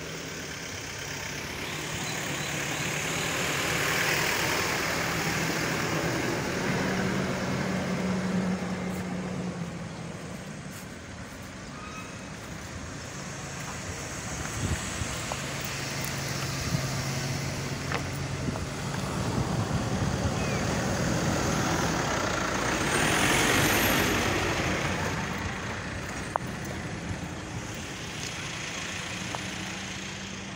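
Road vehicles going by, the noise swelling about four seconds in and again near twenty-four seconds, over a steady low engine hum.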